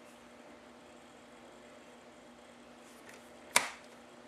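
Quiet room with a faint steady hum, then one sharp click about three and a half seconds in: the clear plastic cutting arm of a paper trimmer being brought down onto the cardstock.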